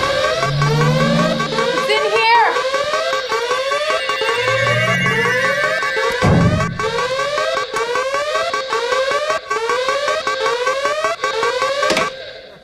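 An electronic alarm siren whooping in rapid rising sweeps, about two a second, loud and steady, which stops abruptly at the end. A thud sounds about six seconds in.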